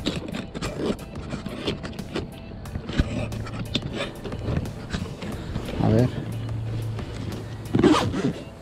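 Zipper of a tool backpack full of tools being worked closed, with many scattered clicks and rustles of the fabric and the tools inside. A low steady hum comes and goes through it.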